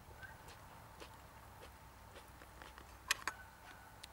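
Two sharp clinks a fraction of a second apart, about three seconds in, as small glasses are set down on a table; the second leaves a brief ring. Scattered soft ticks and faint outdoor background surround them.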